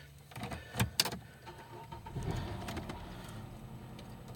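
A car's engine being started: a few sharp clicks, then cranking about two seconds in, and the engine settling into a steady low idle.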